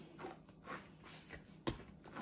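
Hands kneading a ball of bread dough on a countertop mat: faint soft pressing and rubbing sounds, with one sharper knock near the end.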